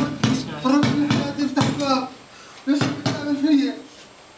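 People laughing in several bursts, with short breaks between them.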